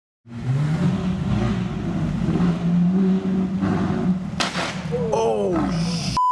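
Supercar engines running at low revs in the street, a steady deep drone that wavers in pitch, with a single sharp knock about four and a half seconds in.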